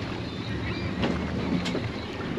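Motorboat under way at sea: a steady engine hum under rushing water, with wind on the microphone.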